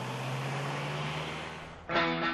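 London black cab's diesel engine running as the taxi drives off, a steady drone with road noise that fades out near the end.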